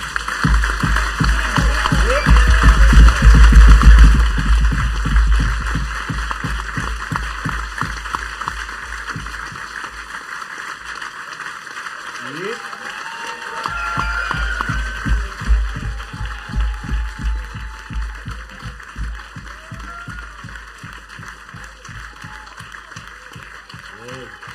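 Audience applause and cheering, loudest in the first few seconds and then easing off, over a deep pulsing bass that drops out for a few seconds midway and comes back.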